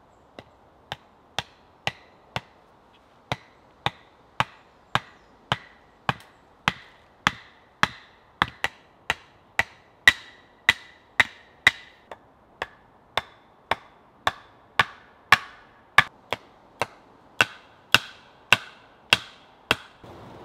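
An axe repeatedly striking the top of an upright wooden stake, driving it into the ground. The sharp knocks come about two a second with a brief pause early on, and they get harder in the second half.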